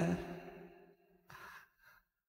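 A man's voice trailing off at the end of a phrase, then a short, faint breath about one and a half seconds in.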